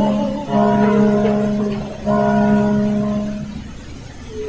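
Opera orchestra holding two long, soft chords over a steady low note. The second chord enters about two seconds in, and each fades away, the sound dying down near the end.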